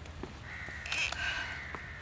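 A bird call outdoors: one drawn-out, high call of about a second that starts about half a second in and shifts in pitch.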